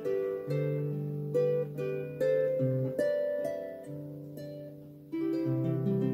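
Celtic harp played by hand: a plucked melody of ringing notes over held bass notes, each note dying away slowly. The playing softens toward the middle, then a fuller, louder chord is struck about five seconds in.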